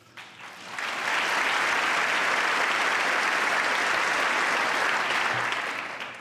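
Audience applauding. The clapping swells within the first second, holds steady, then fades out near the end.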